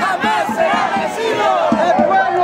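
A protest crowd of many voices shouting chants together, loud and continuous.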